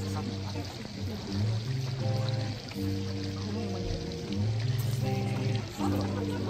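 Music playing, a slow piece with long held notes over a low bass line.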